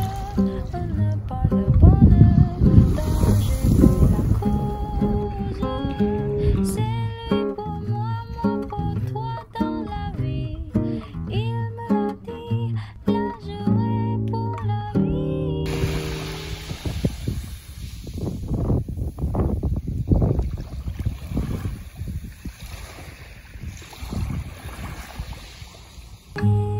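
Background music for about the first fifteen seconds, then it cuts off suddenly and small waves wash up over a beach of small pebbles and black sand, coming in uneven surges, with wind on the microphone.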